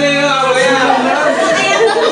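Several people chattering and talking over one another in a room.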